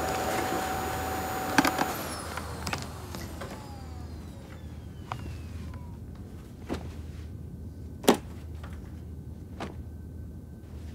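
Philips Performer canister vacuum cleaner running, then switched off with a click a couple of seconds in; its motor whine falls in pitch and winds down over the next few seconds. Scattered plastic clicks and knocks follow as its lid is opened and the dust bag taken out, the sharpest knock about eight seconds in.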